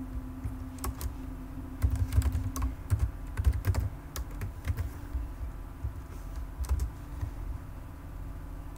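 Typing on a computer keyboard: irregular runs of key clicks, densest through the first half, then a few scattered key presses. A faint steady hum sits underneath early on.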